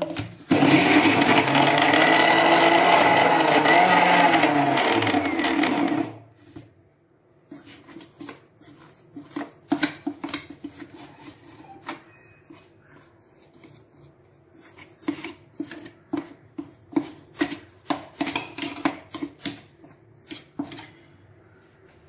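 Electric mixer grinder running for about five and a half seconds, grinding roasted dried chillies in its stainless-steel jar for chammanthi. The motor slows with a falling pitch and stops. After that, a metal spoon scrapes and clinks irregularly against the inside of the steel jar.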